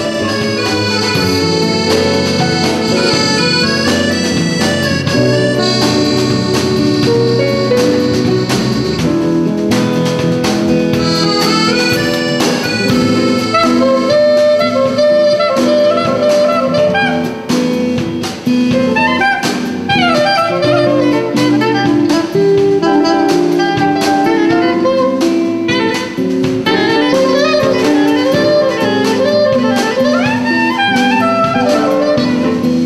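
Small band playing a jazzy, melodic tune, the lead carried by a soprano saxophone over accordion and the rhythm section. About twenty seconds in the lead sweeps down in pitch.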